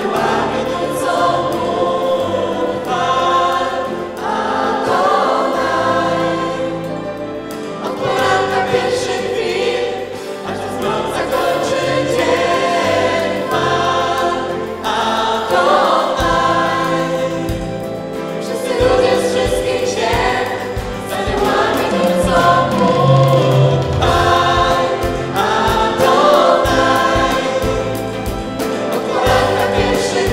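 Live worship band: several voices, male and female, singing a worship song together over acoustic and electric guitar accompaniment.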